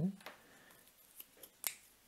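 A few light, sharp clicks of plastic felt-tip pens knocking against each other and the tabletop as one is picked out of a pile, the loudest near the end.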